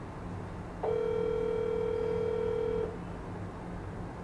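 Telephone ringback tone from an outgoing call on a phone's speaker: one steady ring about two seconds long, starting about a second in, as the called phone rings unanswered. A low steady hum runs underneath.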